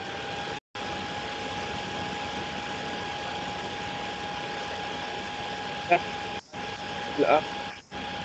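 Steady hiss with a constant high whine over a video-call line, cut by three brief audio dropouts. A voice reading comes through only as faint fragments near the end, not clear enough to follow.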